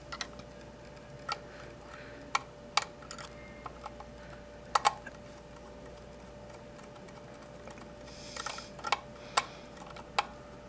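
Irregular small sharp clicks of a screwdriver tip working a screw terminal on a plastic terminal block as a wire is fastened, with one quick double click midway and a brief rustle of wires near the end.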